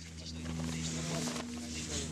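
Steady low hum of an idling engine, with voices talking over it.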